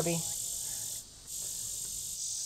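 A steady, high chorus of crickets chirring that drops out briefly about a second in.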